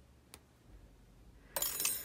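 A faint click, then near the end a short loud metallic clatter and scrape as small metal clay tools are handled, one metal disc and a thin metal needle on a hard work surface.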